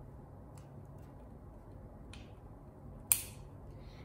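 Small hard plastic LEGO pieces being handled and pressed onto the model: a couple of faint clicks, then one sharp click about three seconds in, over a low steady hum.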